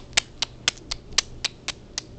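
A quick, even run of sharp clicks, about four a second.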